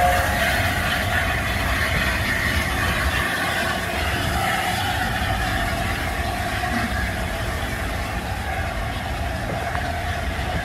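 Coaches of a steam-hauled passenger train rolling past on the rails: a steady rumble of wheels on track that slowly fades as the train draws away.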